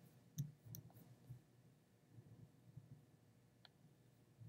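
Near silence broken by a few faint, sharp clicks: three in quick succession in the first second and one more near the end.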